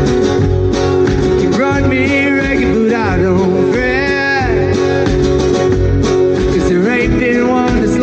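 Live band performing a song: a singer holds long notes with vibrato over strummed acoustic guitar and a steady low beat.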